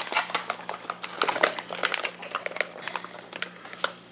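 Foil freeze-dried meal pouch crinkling as a metal fork scrapes rehydrated lasagna out of it onto a plate: a string of irregular light clicks and rustles.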